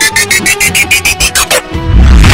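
Instrumental Arabic tarab karaoke backing music: a fast run of repeated notes, about eight a second, climbing in pitch, that breaks off shortly before a loud low beat near the end.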